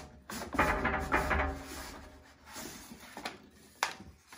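A cardboard box being pulled up and off its packed contents: cardboard rubbing and squeaking against the inner packaging for about a second early in the lift, then lighter rustling and one sharp snap near the end.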